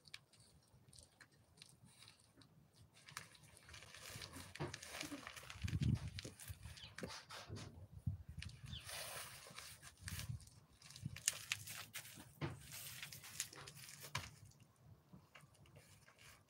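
Faint, intermittent sounds of a toddler handling footballs: soft knocks and thuds of the balls, with small grunting, breathy vocal noises from the child.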